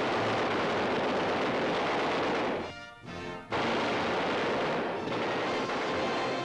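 A fighter plane's machine guns firing in two long bursts, the second starting about halfway through after a short break, with orchestral newsreel music under and between them.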